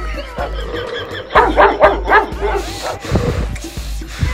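Dog barking and yelping over background music, with a run of loud barks about a second and a half in.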